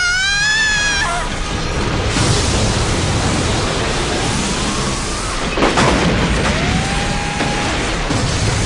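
Explosion and electrical-destruction sound effects: a continuous heavy rumble with a sharp crack about five and a half seconds in and slow rising whines over it, opened by a character's scream in the first second.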